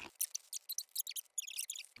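Fast-forwarded audio of tortilla chips being counted out by hand into a bowl: a rapid, thin run of high-pitched chirps and clicks, about eight a second, with no low end.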